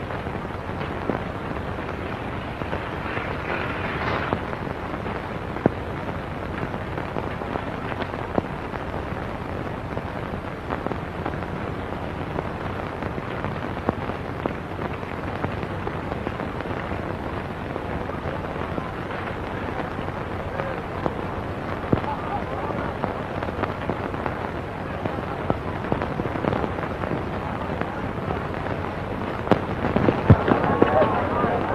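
Steady hiss with frequent small crackles and pops: the surface noise of an early-1930s optical film soundtrack.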